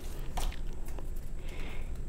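Tarot cards being handled on a wooden table: a few faint taps, then a brief soft slide of card against card near the end.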